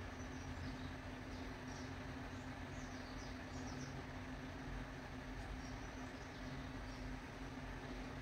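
Faint steady low hum and room noise, with faint small scratching of a steel crochet hook drawing cotton yarn ends through crocheted stitches.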